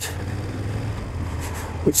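BMW F800 GS motorcycle's parallel-twin engine running at low speed with steady wind and road noise, as the bike picks up speed in first and second gear.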